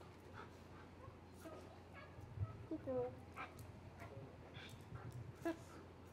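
German Shepherd police dog whimpering faintly in short calls, the clearest about three seconds in, with scattered light clicks and taps.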